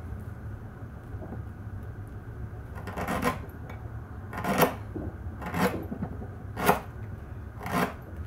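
A kitchen knife slicing through a palm frond and onto an end-grain wooden cutting board, five cuts about a second apart, each a short crisp stroke.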